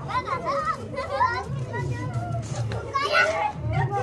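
Several children shouting and calling out excitedly as they play, with adults talking among them.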